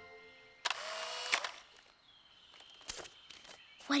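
Cartoon toy instant camera taking a picture: a sudden shutter snap about two-thirds of a second in, followed by about a second of rushing noise. Then comes a faint thin high tone with a few soft clicks.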